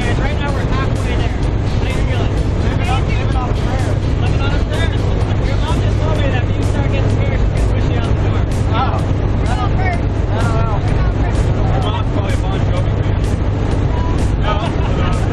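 Steady drone of a jump plane's engine heard inside the cabin in flight, with a constant low hum. Voices talk and laugh faintly over it.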